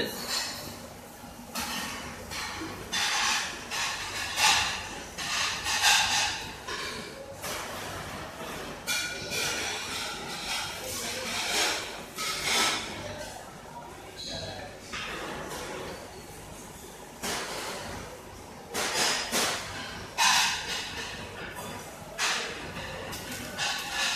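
Crinkling and rustling of a wrapping sheet being handled over a block of cookie dough, in irregular crackly bursts, over a faint steady hum.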